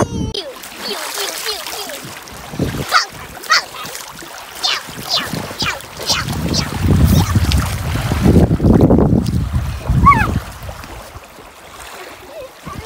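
Shallow seawater splashing as a child wades and kicks in it: a run of separate splashes, then a heavier stretch of sloshing a few seconds long. A child's short cry comes near the end.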